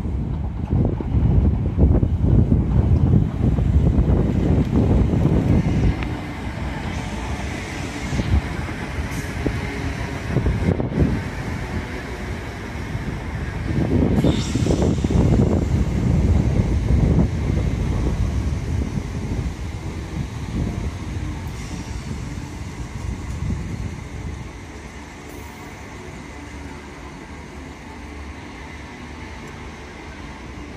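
Royal Mail Class 325 electric multiple unit passing close by, its wheels and running gear rumbling over the rails. The rumble is loudest over the first few seconds, swells again about halfway through, and eases off near the end as the last vans go by.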